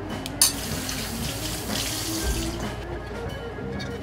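Background music, with a sharp click about half a second in followed by about two seconds of hissing noise.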